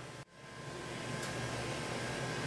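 Steady background hiss and hum of a small room, with a faint high steady tone, after a brief dropout about a quarter second in.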